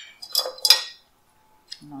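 Metal kitchen utensils clinking against glass mixing bowls: two sharp, ringing clinks in the first second, then quiet.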